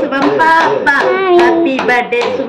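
Lively voices of a woman and child talking over one another, with hand claps among them.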